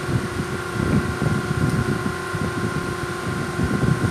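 Steady hum of a running fan in a small room, with irregular low rumbling from air or handling on the phone's microphone.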